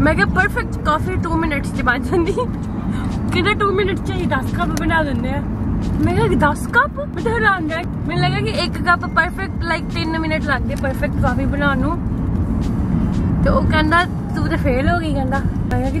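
Conversation in a moving car's cabin, over a steady low rumble of road and engine noise.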